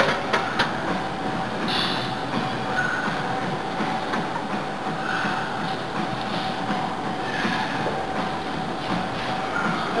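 Steady rushing background noise with a faint constant tone running through it. A few sharp clicks come right at the start.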